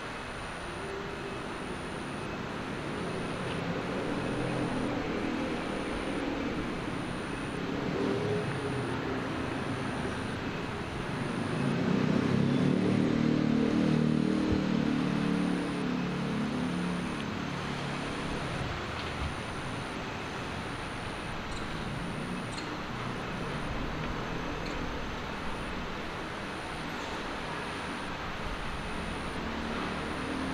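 Background road traffic: a steady rumble with one vehicle swelling louder and fading about twelve to fifteen seconds in, and a faint high-pitched pulse repeating about once a second.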